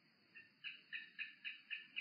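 Faint rapid chirping from a small animal: about seven short, evenly spaced chirps, roughly four a second, growing slightly louder.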